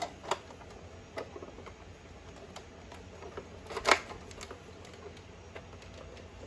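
Hard plastic toy helicopter handled and turned in the hands: a few faint scattered clicks and light rustles, with one sharper click a little before the four-second mark.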